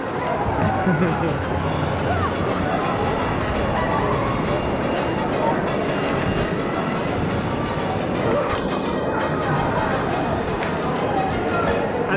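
Wave-pool waves at an indoor water park, water rushing and splashing under a babble of many voices, with music playing along.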